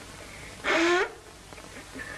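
A boy with a bad cold blowing his nose hard into a handkerchief: one short, loud, honking blow with a falling pitch, a little over half a second in.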